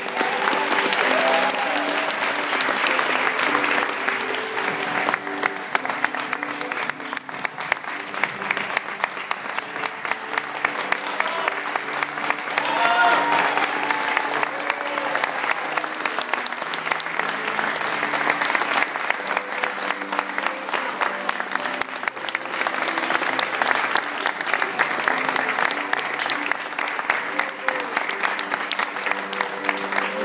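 Audience applauding throughout, with instrumental music playing underneath.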